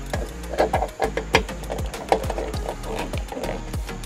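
Background music with a steady bass beat, about two beats a second.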